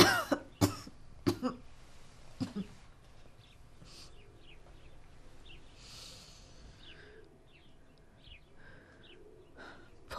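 A woman coughing: a fit of several harsh coughs in the first two or three seconds, then faint short bird chirps in the quiet that follows.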